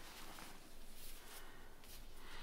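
Faint rustling and handling noise as skeins of yarn are put away.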